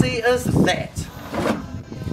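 A man's voice speaking briefly.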